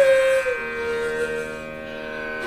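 Bansuri (bamboo transverse flute) holding one long note that slides down a little about half a second in, then slowly fades.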